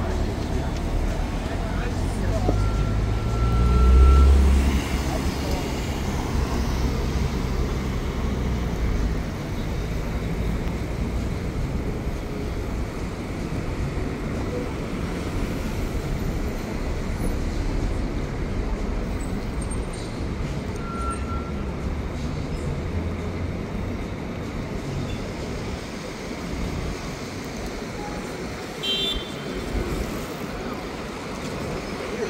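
City street traffic at a busy intersection: cars running and passing close by, with a deep rumble swelling about four seconds in as a vehicle goes past, and voices of passers-by in the background.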